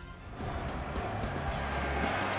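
Short music sting for an animated TV logo transition, swelling in about half a second in and settling into a steady low drone.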